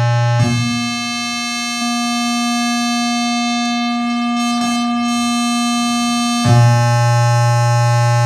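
Willpower Theremin, a software oscillator whose pitch and volume are set by infrared sensors reading hand distance, sounding a steady electronic tone. It holds a low note, jumps to a higher note about half a second in, holds it for about six seconds, then drops back to the low note near the end.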